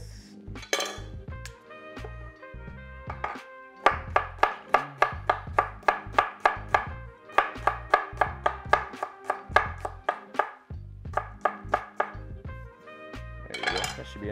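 Chef's knife slicing through unpeeled ginger onto an end-grain wooden cutting board, a run of quick, even knocks about three to four a second. Background music plays underneath.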